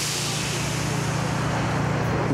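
Steady vehicle noise: a low rumble under a hiss that sets in sharply just before and slowly fades.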